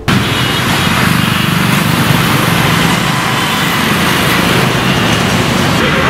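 Small motorcycle-type engine running steadily close by, under a loud, even rushing hiss.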